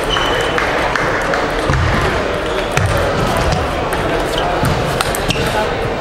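Celluloid table tennis balls clicking sharply off bats and tables in a rally, the irregular clicks set against a steady murmur of voices and play echoing in a large sports hall.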